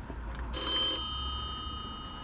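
A doorbell rings once about half a second in: a single bright bell-like ring that dies away over about two seconds.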